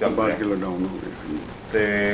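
Men talking in conversation: a man's voice speaking early on and again near the end, with a short pause between.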